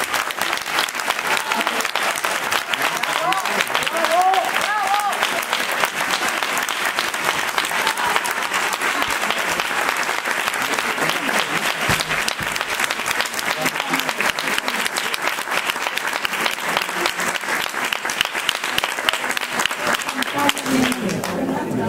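A live audience applauding steadily in a hall, with a few voices calling out over the clapping in the first few seconds.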